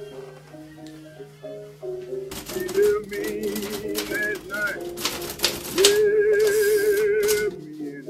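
Background music, then from about two seconds in a manual portable typewriter clattering loudly as the keys are struck in quick runs, with a warbling, wavering tone over the typing. The typing stops shortly before the end, leaving the soft music.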